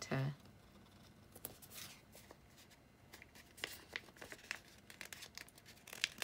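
Faint crinkling and light ticks of a washi paper sticker sheet being handled while a sticker is pressed onto a journal page, with a cluster of sharper clicks about three and a half to four and a half seconds in.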